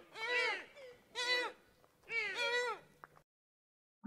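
A deer bleating: three high-pitched calls about a second apart, each rising and then falling in pitch, the last one in two parts.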